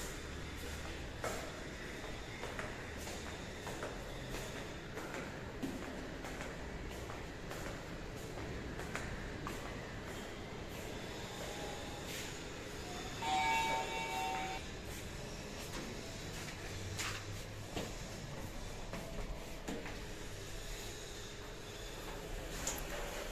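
Footsteps along a tiled corridor over a steady low hum, with a lift's electronic chime sounding briefly about thirteen seconds in.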